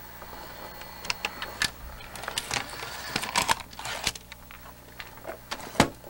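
Scattered mechanical clicks and light knocks from an opened late-1980s RCA VCR being operated and handled, over a steady low hum; the sharpest click comes near the end.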